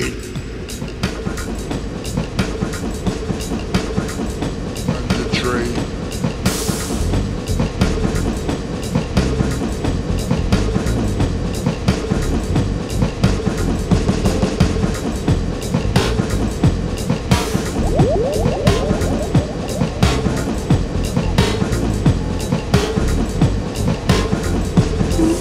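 Music track built on railway sounds: a train's rapid clickety-clack over the rails, with a steady drone and bass underneath. A brief hiss comes about six and a half seconds in.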